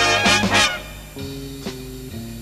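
Swing-style big-band music from a stage orchestra: the horn section plays a loud, held, brassy chord with two accented stabs, then cuts back a little over half a second in to softer held notes, with a sharp drum hit near the end.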